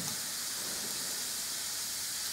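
A steady, even hiss of background noise, with no distinct knocks, clicks or tones.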